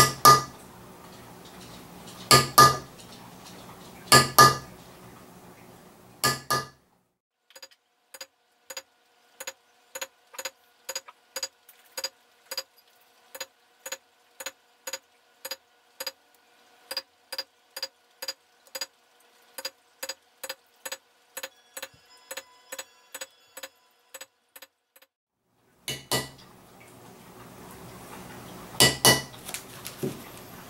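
Metal leather-stamping tool (a small circle seeder) struck with a mallet into leather on a granite slab. A few hard strikes at the start and again near the end, and between them a long steady run of lighter, evenly spaced taps, about two a second, each with a short ring.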